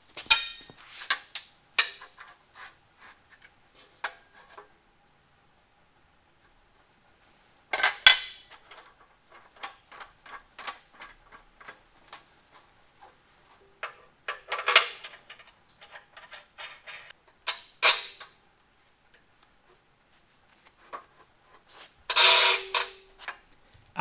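Steel parts, magnetized spacers and clamps being set down and shifted on a steel fixture welding table: scattered metallic clicks and clanks. A few louder clanks ring briefly, the loudest near the end.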